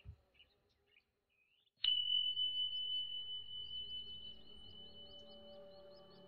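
A small meditation bell is struck once, about two seconds in, to open the meditation. It gives a single high, clear tone that rings on and slowly fades. Soft low tones build up underneath it.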